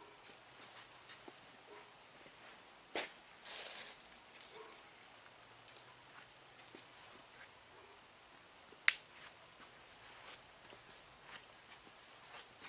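Quiet room tone broken by two sharp clicks, one about three seconds in with a brief rustle just after it, and a louder one near nine seconds.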